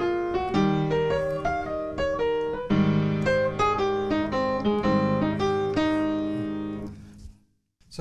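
Piano playing a jazz II-V-I: left-hand shell chords under quick right-hand arpeggios with chromatic notes encircling the third of each chord. New left-hand chords come in about half a second and about three seconds in, and the last chord dies away a second before the end.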